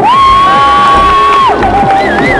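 A high-pitched shout from a spectator, held at one steady pitch for about a second and a half and then cut off, over electronic dance music with a beat.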